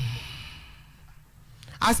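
A person's long, breathy sigh into the microphone between sentences, a soft hiss that fades away over about a second and a half before speech resumes near the end.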